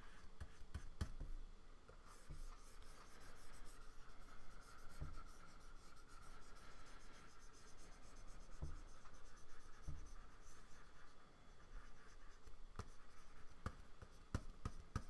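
Faint scratching of a stylus nib moving over a Wacom Cintiq pen display, with a few soft low thumps and small clicks from the pen and desk.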